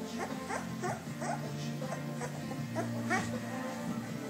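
Two-week-old puppies squeaking and whimpering in short, repeated high cries, two or three a second, over steady background music.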